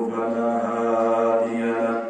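A man's voice chanting in long, held melodic notes, stopping near the end.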